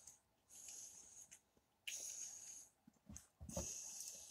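Faint breathing through the nose while eating: three short hissing breaths about a second and a half apart, with a few soft low thuds a little after three seconds.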